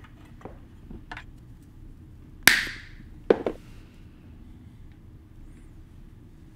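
Metal clicks from pliers working a thin steel throttle linkage wire: a few light ticks, then two sharp snaps a couple of seconds in, about a second apart, the first ringing briefly.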